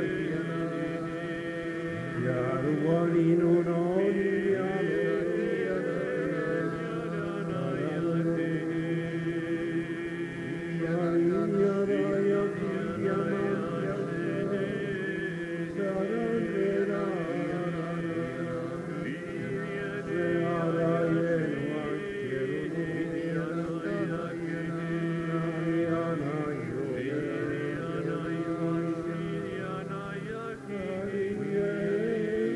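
Many voices of a congregation chanting together in long, overlapping held tones, with no clear words.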